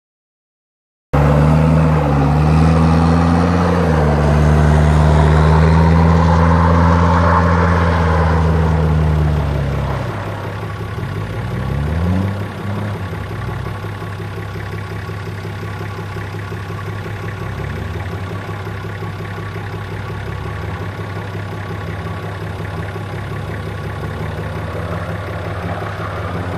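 Toyota Hilux Surf's engine, starting suddenly about a second in and running loud and steady under load, then dropping to a lower, quieter steady note about ten seconds in, with a brief rev that rises and falls a couple of seconds later.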